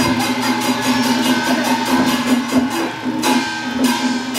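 Taiwanese opera (gezaixi) accompaniment band playing an instrumental passage: a sustained melody line over quick, even percussion strokes.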